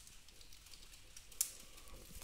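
Computer keyboard keys being tapped: a few faint, scattered clicks, with one sharper click about one and a half seconds in.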